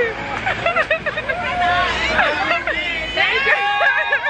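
Several excited women's voices talking and calling out over one another, with a low street rumble underneath that stops about three seconds in.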